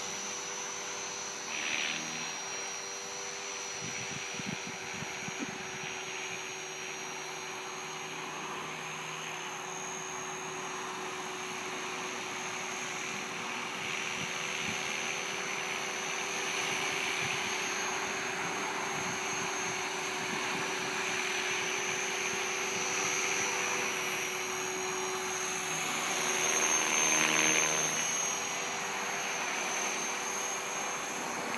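Align T-Rex 500 DFC electric radio-controlled helicopter in flight: a steady whine from the motor and rotors over a rushing hiss. It grows louder for a few seconds near the end.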